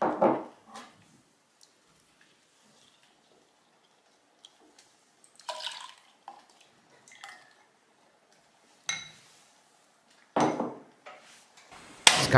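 Kitchen handling sounds: a silicone spatula and a small glass bowl scraping and clinking against a stainless steel saucepan as a thick coffee-and-cornstarch mixture is scraped in, with light liquid drips. Near the end there is a louder clunk of the pot on the hob.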